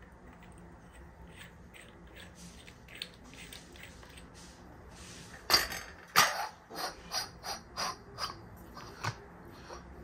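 Anodised aluminium hookah stem and downpipe being fitted together and into the glass base. A quiet stretch gives way about halfway through to a run of sharp clicks and knocks, two or three a second. The first two are the loudest.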